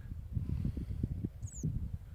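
Wind buffeting the microphone of a handheld camera in open country, an uneven low rumble. A single short, high chirp from a small bird falls in pitch about one and a half seconds in.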